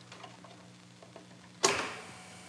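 Faint clicks and scrapes of a 5.25-inch floppy disk being slid into a Commodore floppy disk drive and the drive's door lever being turned shut, over a low steady hum. A sudden louder sound comes about one and a half seconds in and dies away.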